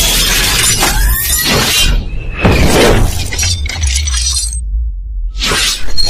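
Cinematic logo-intro sound effects over music: a heavy bass bed with sweeping whooshes and several crashing impacts. The upper range cuts out briefly about five seconds in, then a final loud hit lands.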